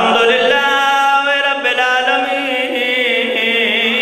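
A man's voice chanting an invocation in long, held notes with ornamented turns, amplified through a microphone: the zakir's melodic opening recitation.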